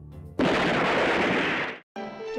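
A loud rush of noise that starts suddenly, holds steady for about a second and a half, then cuts off abruptly: a blast-like transition sound effect laid over the cut from the intro to the episode.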